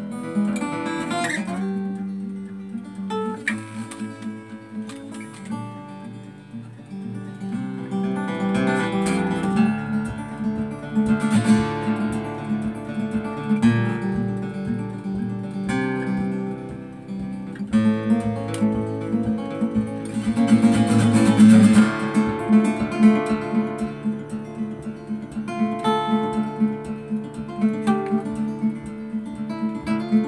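A solo acoustic guitar played live, with picked melody lines and strummed chords. The chords swell louder around ten seconds in and again around twenty seconds in.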